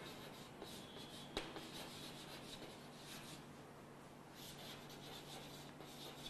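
Chalk scratching faintly on a blackboard as words are written, with one sharper tap about one and a half seconds in. A steady low hum sits underneath.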